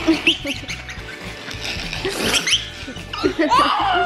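A toddler laughing hard in short, high-pitched bursts while being played with and tickled, over background music.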